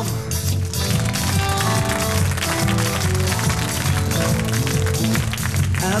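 Live rock band playing an instrumental passage: a drum kit keeps a steady beat under held bass and guitar notes.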